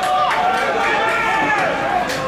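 Several voices shouting and calling over one another during a football match, with a short sharp knock just after the start, like a ball being kicked.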